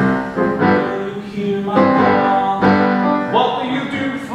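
A man singing to live piano accompaniment.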